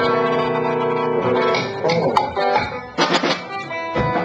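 A folk band playing: held chords with a plucked string instrument. There is a short lull and then a sharp new attack about three seconds in.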